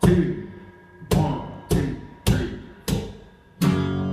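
Acoustic guitar strumming chords: six strokes, each left to ring and fade before the next.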